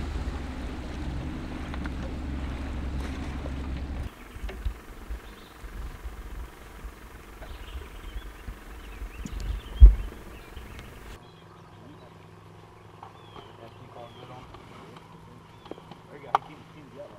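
Outdoor ambience aboard a small fishing boat on a lake, made of several joined clips: a steady low hum for the first four seconds, then quieter, with birds chirping and a single loud knock near ten seconds.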